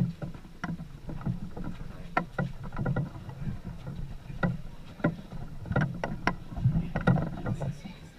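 Wooden carrying poles of a processional statue litter creaking and knocking under load as the bearers walk, in irregular knocks a few times a second with short creaks between.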